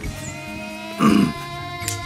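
One short, loud call from the cattle pulling the plough, a brief low about a second in, over steady background music.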